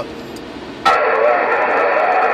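President HR2510 radio receiving: low static hiss, then a click under a second in as an incoming signal opens the receiver, giving a loud, steady mix of tones and warbling, garbled transmission over its speaker.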